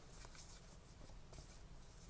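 Faint rustle and scrape of Pokémon trading cards sliding against one another as they are fanned through by hand.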